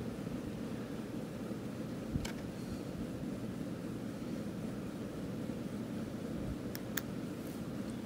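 Steady low background hum, with a few faint clicks of a paper receipt being handled.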